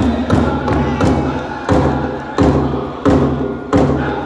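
Powwow drum struck in unison by the drum group, a steady heavy beat about one and a half times a second, with the singers' voices carrying over it.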